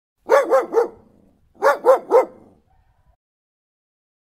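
A young dog barking: two quick runs of three barks, the second run about a second after the first.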